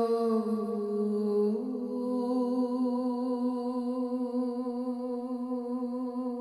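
A woman singing long wordless vocal tones. Her note dips slightly about half a second in, then she steps up to a higher note about a second and a half in and holds it steadily.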